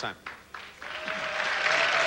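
Studio audience applauding, beginning just under a second in and building.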